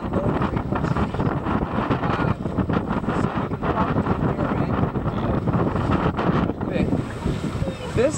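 Wind buffeting the microphone aboard a boat on choppy water, over the boat's running motor and the wash of the sea.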